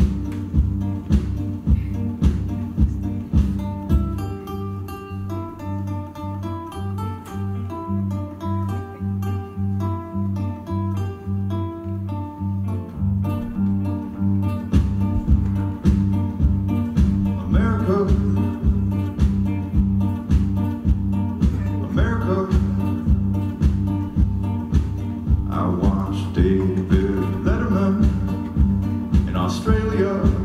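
Live band playing an instrumental passage: a steady drum beat under held bass notes and strummed acoustic guitar, with a run of single picked lead notes from about four seconds in until about thirteen.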